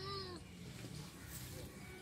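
A faint, drawn-out animal call with a wavering pitch, fading out about half a second in, over faint outdoor background.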